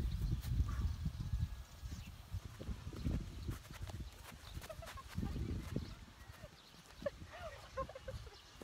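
Wind buffeting the microphone outdoors in low rumbling gusts, strongest at the start and again around the middle, with a few short rising-and-falling calls near the end.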